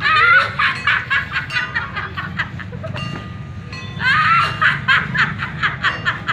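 A woman's loud, high-pitched theatrical cackling laughter in two bouts, one at the start and one about four seconds in.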